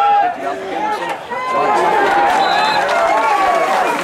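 Crowd of spectators shouting and cheering, many voices at once, growing louder about a second and a half in.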